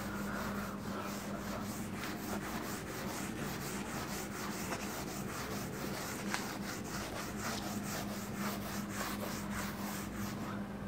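Faint handwriting: quick, repeated scratching strokes of a pen on a writing surface, over a low steady hum.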